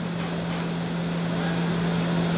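Steady low mechanical hum under an even rushing air noise that grows a little louder, as from a room's ventilation or air-conditioning unit.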